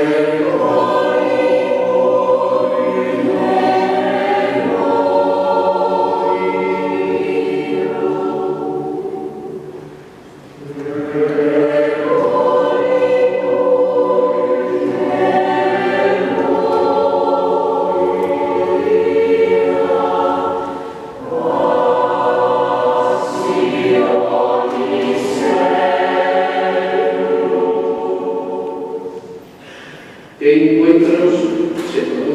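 Mixed choir of women's and men's voices singing a sacred piece in three long phrases, with short breaks about ten and twenty-one seconds in.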